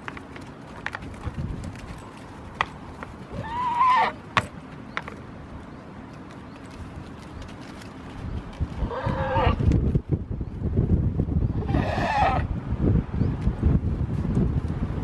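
Goats bleating, three short calls about four, nine and twelve seconds in, with scattered sharp knocks as the goats butt heads. A low rustling noise grows louder in the second half.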